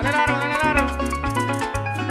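Live joropo instrumental: llanera harp runs and strummed cuatro over a pulsing electric bass, with maracas shaken hard and prominent. A short wavering tone rises and falls over the first second.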